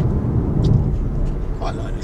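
Steady road and wind noise inside the cabin of a Kia e-Niro electric car cruising at speed, a low rumble with no engine note.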